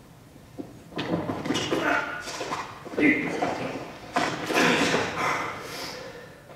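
Two actors grappling in a staged fight on a wooden stage: shuffling feet, knocks and strained grunts from the struggle, coming in uneven bursts. It starts with a sharp knock about a second in and eases off near the end.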